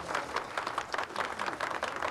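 A group of people clapping: a dense, uneven patter of many hand claps.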